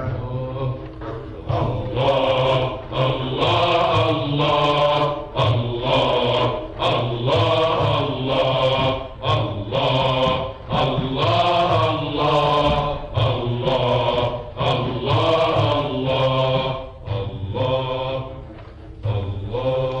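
Male voice chanting an Egyptian religious ibtihal (supplication) in Arabic, unaccompanied, in long winding phrases broken by short pauses, from an old radio recording.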